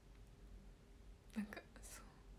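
Quiet room tone with a faint steady hum, then about one and a half seconds in a woman's brief, soft whispered sound.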